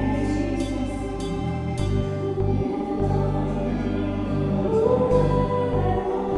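A praise-and-worship song sung by several voices through microphones, over sustained accompaniment whose bass notes change every second or so.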